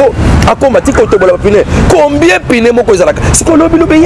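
A man talking steadily and animatedly, with a low rumble underneath.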